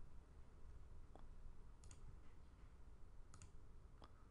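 Near silence with two faint computer mouse clicks, about two seconds in and again near the end.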